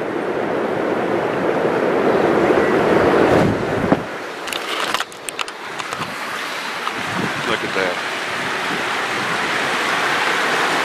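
Steady rushing noise of wind and river water on the camera's microphone. It is loudest for the first four seconds, then drops. A few sharp clicks and knocks about five seconds in come from the camera being handled.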